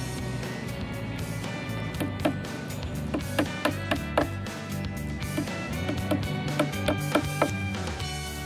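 A small hammer tapping short broad-headed nails through nonwoven landscape fabric into a wooden pallet, a quick irregular run of sharp taps that builds up after the first second or so. Background music plays throughout.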